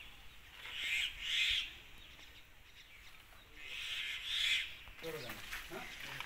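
Two short pairs of harsh, raspy bird calls about three seconds apart. A voice starts near the end.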